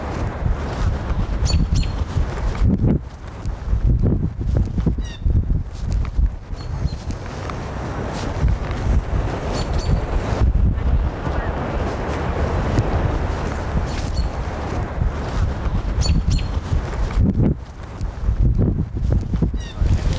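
Outdoor ambience of a group on foot: heavy wind noise on the microphone, footsteps and indistinct voices, with a few short high bird chirps.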